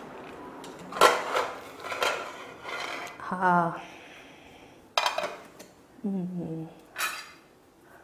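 Metal pressure cooker pot and lid clattering as the lid is taken off, then a metal ladle clinking against the pot. A few short knocks with a brief ringing tail.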